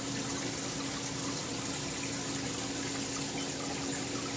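Steady rush of water circulating through a saltwater aquarium, with a faint steady pump hum under it.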